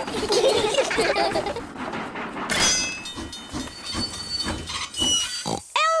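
Cartoon steam train sound effects: a short high whistle about two and a half seconds in, followed by steady chuffing, about three puffs a second.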